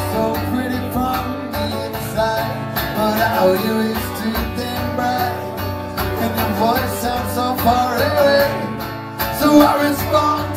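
Live rock band music: a man singing over a strummed acoustic guitar, the music continuous and loud throughout.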